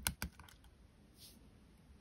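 A few small, sharp plastic clicks right at the start as a MacBook arrow key's scissor clip comes free of its pins on the keyboard.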